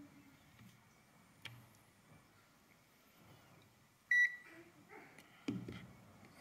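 ZOYI ZT-703S handheld oscilloscope multimeter giving one short, high electronic beep about four seconds in as it powers back on.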